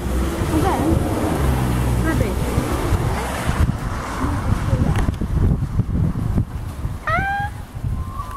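Wind buffeting the microphone of a handheld camera while walking, with a few short voice sounds; about seven seconds in, a short high call that rises in pitch.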